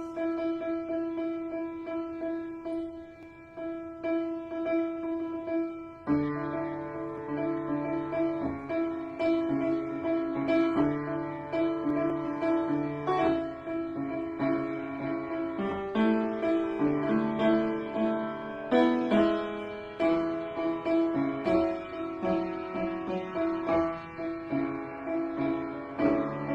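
Solo piano playing: one note struck over and over for about six seconds, then chords with a bass line come in and the playing carries on steadily.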